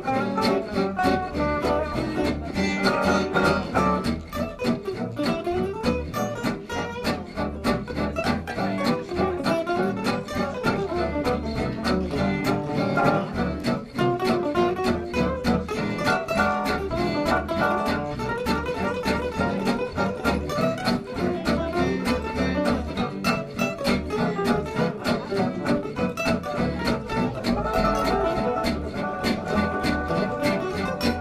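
Gypsy jazz string band playing live: several acoustic guitars strummed in a steady swing beat over a plucked double bass.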